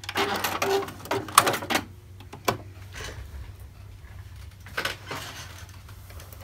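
Domestic sewing machine stitching for about two seconds, backstitching at the end of a stitch line to lock the stitches, followed by a few sharp clicks as the machine is stopped and worked.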